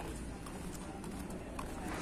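Faint footsteps on a paved pavement over a low, steady street background.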